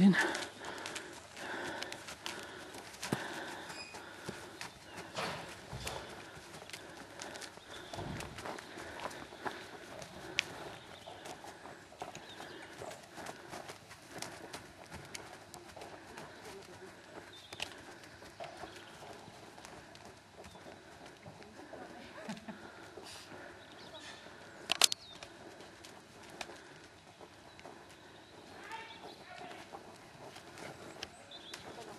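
Horse hoofbeats on arena footing: irregular soft knocks, with faint voices behind them. One sharp, loud knock comes about five seconds before the end.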